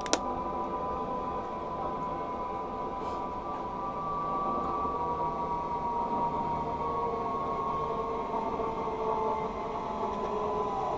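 Zipline trolley pulleys running along the steel cable while a rider travels down the line, heard as a steady whine made of several tones that slowly drop in pitch.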